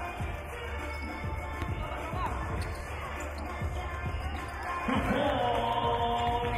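Basketball bouncing on a hardwood gym floor during play, a run of repeated thuds in a large hall.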